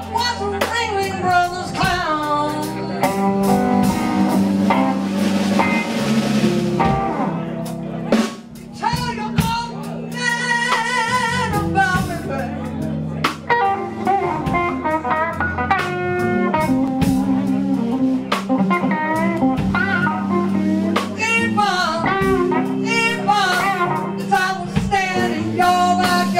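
Live blues band playing: electric guitar with bent and vibrato notes over bass and drum kit, with a male voice singing.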